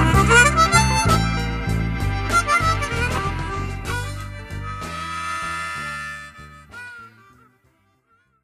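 Blues harmonica playing over a band with bass and drums, the closing bars of the song. A long held harmonica note about five seconds in, then a short last phrase, and the music ends about seven seconds in.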